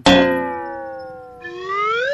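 Comedy sound effects: a struck metallic ding that slowly sinks in pitch as it fades. About one and a half seconds in, a rising glide follows, climbing steeply in pitch and cutting off suddenly.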